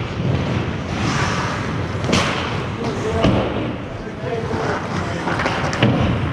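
Ice hockey play in an indoor rink: a steady rushing background with sharp knocks of sticks, puck and boards about two seconds in, a second later, and near the end, among players' distant shouts.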